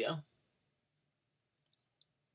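A woman's voice ending a word, then near silence broken by a few faint tiny clicks.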